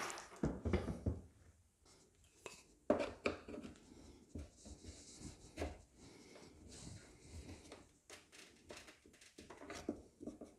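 Hook-and-loop (Velcro) strip holding a dishwasher's front panel being pulled apart, giving irregular short crackling tears as the fastening loosens.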